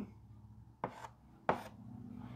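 Chalk writing on a blackboard: two sharp taps of the chalk against the board, a little over half a second apart, as strokes are put down.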